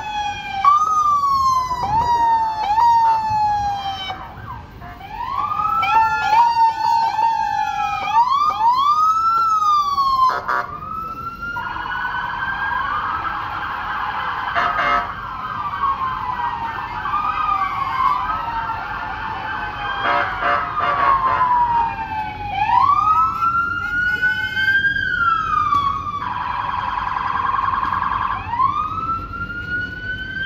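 Several police sirens on passing patrol cars and pickups sounding at once: overlapping wails that rise and fall, with quick falling sweeps in the first few seconds.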